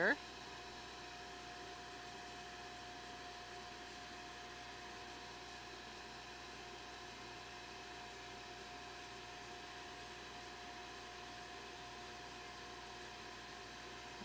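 Sandcarving blast cabinet running during a light surface etch of masked glass: a low, even hiss with a faint steady hum.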